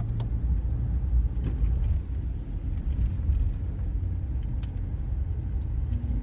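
Steady low rumble of road and engine noise inside a moving car's cabin, with a few faint clicks.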